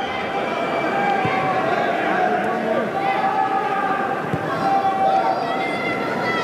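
Several voices calling and talking over one another from the pitch, heard through the broadcast's field microphones over a steady background of empty stands with no crowd noise.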